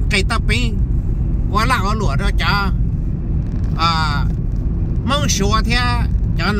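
A man talking inside a moving car's cabin, over a steady low rumble of road and engine noise.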